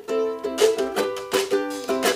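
Ukulele strummed in a steady rhythm, chords ringing between the strokes.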